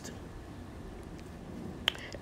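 Quiet background hiss with a single sharp click a little before the end.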